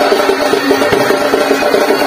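Live folk dance music: drums beaten in a quick, steady rhythm under a melody of short repeated notes.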